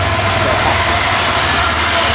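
Diesel dump truck pulling uphill as it passes close by: a steady deep engine rumble under loud tyre and road noise.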